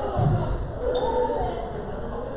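Indistinct voices talking in a large echoing hall, with a table tennis ball bouncing.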